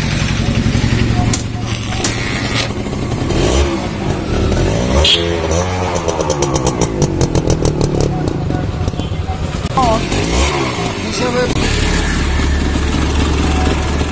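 Honda H100S single-cylinder two-stroke motorcycle engine running on its modified carburettor. It is revved up and back down about four seconds in and again about ten seconds in, then settles to a steadier idle near the end.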